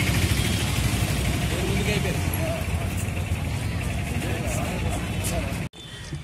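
Outdoor ambient noise, a steady low rumble with faint voices talking in the background, which cuts off abruptly near the end.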